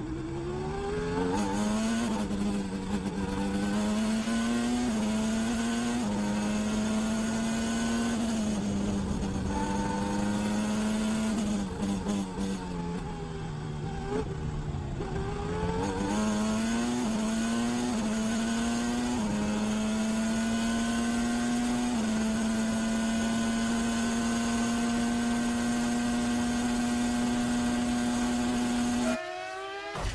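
Williams FW16 Formula 1 car's Renault V10 engine at racing speed, heard from the onboard camera. Its note climbs and drops in steps through gear changes, falls away under braking and downshifts in the middle, then holds high and steady flat out before cutting off abruptly near the end.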